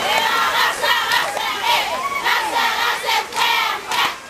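Chorus of Pulap women dancers chanting loudly in unison, short high-pitched shouted phrases repeating about two to three times a second, with a brief pause near the end.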